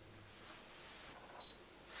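A single short, high beep from a Canon DSLR about one and a half seconds in: the autofocus confirmation beep as the lens locks focus. Quiet room tone otherwise.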